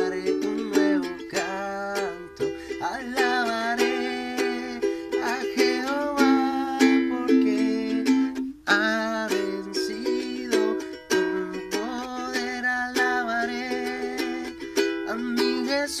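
Fender soprano ukulele strummed in a steady rhythm, playing the chords of a worship song in E minor.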